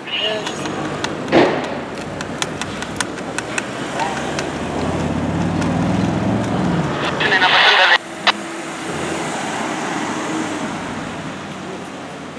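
Audi RS6 Avant's twin-turbo V8 revving, rising and falling. A loud blare of exhaust follows and cuts off suddenly about eight seconds in, leaving quieter traffic and engine noise.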